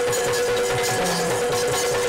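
Yakshagana accompaniment for dance: rapid drumming with short low strokes that drop in pitch, several a second, and the ring and clatter of small cymbals over a steady held drone.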